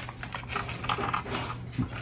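A scatter of small clicks and taps from a die-cast Dinky Toy crane being handled and turned over by hand.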